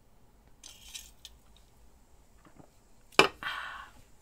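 A person taking a drink: a short sip under a second in, then the cup or glass set down on the desk with a sharp knock about three seconds in, the loudest sound here, followed by a short breathy exhale.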